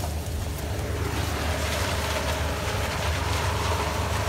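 Sugarcane harvester running, a steady low engine drone, with a louder rushing noise joining about a second in.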